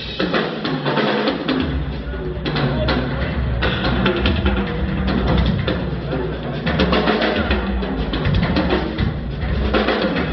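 Drum kit played live in a fast, dense solo, the bass drum strong under rapid strokes on drums and cymbals, recorded on a cellphone microphone.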